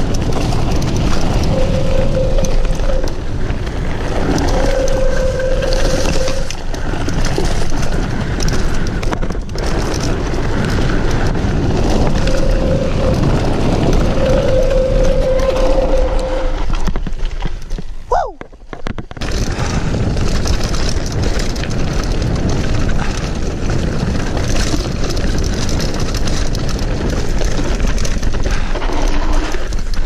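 Loud, steady wind buffeting and rumble from a mountain bike riding a downhill trail, with a few short steady whines in the first half. The noise drops out for about a second around the middle.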